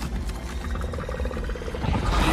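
A monster growling in the anime's sound track, a rattling growl over a deep, steady rumble.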